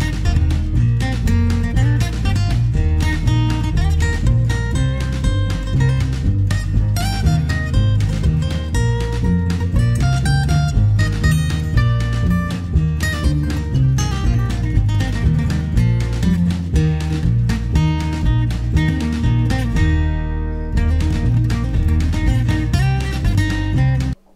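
Background music: acoustic guitar strumming and picking over a bass line with a steady beat.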